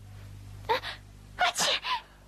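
A woman sneezing twice in quick succession, each sneeze with a voiced, gasping lead-in, set off by sniffing snuff. A steady low hum runs underneath.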